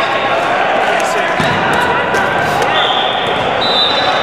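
Gymnasium hall ambience: volleyballs thudding on a hardwood court amid overlapping, indistinct chatter of players, with a thin high squeal in the last second or so.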